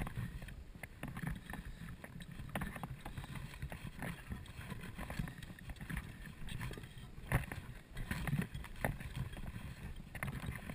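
Wind buffeting a body-worn camera's microphone in a low rumble, with irregular crunching footsteps and rustling as the wearer walks along a dry grass and dirt path.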